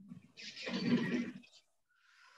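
A man's breathy, quavering exhalation about a second long, the sound of him fighting back tears.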